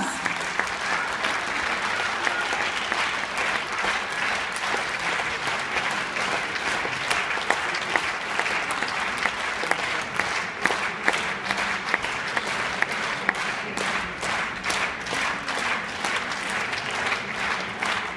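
Audience applauding steadily: a dense patter of many hands clapping, with individual claps standing out more in the second half.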